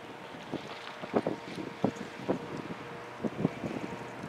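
Gusty wind buffeting the microphone in irregular bursts, over a faint steady hum from distant approaching EMD diesel locomotives.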